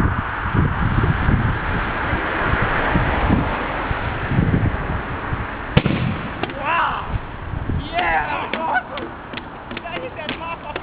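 A steady rushing noise with a low rumble for about the first six seconds, then a sharp click and a few distant shouted calls.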